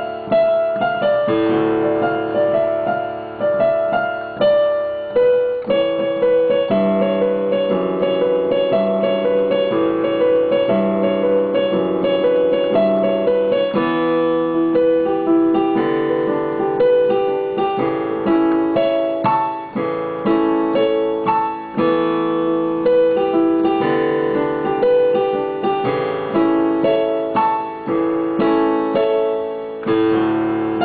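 Solo piano: a riff of struck chords and melody notes, each note decaying before the next is played, going on without a break.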